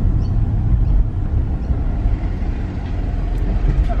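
Car engine and tyre rumble heard from inside the cabin as the car rolls slowly forward, a steady low drone.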